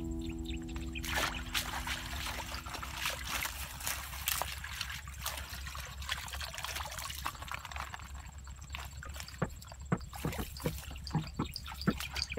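Water splashing and draining out of a woven bamboo basket as it is dipped and lifted in a shallow muddy pool, with irregular splashes and drips that come thicker and sharper near the end.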